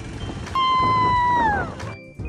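A woman's high-pitched excited squeal, held for about a second and falling in pitch as it ends.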